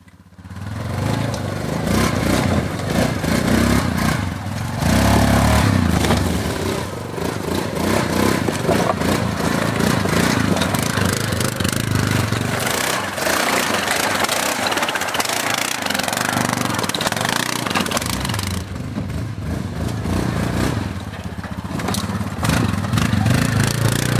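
A four-wheel ATV engine running and revving unevenly as the machine climbs over rocks and rough ground, its rumble rising and falling.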